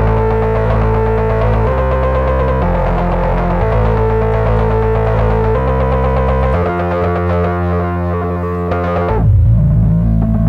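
Modular synthesizer playing loud sustained chords over a bass line whose note changes every second or two. About nine seconds in, a deep sweeping tone comes in and the sound gets a little louder.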